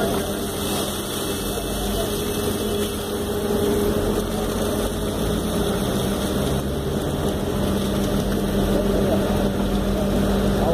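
Backhoe loader's diesel engine running steadily while its hydraulic arm lifts a bucket of mud and debris. The engine hum gets slightly louder after the first few seconds.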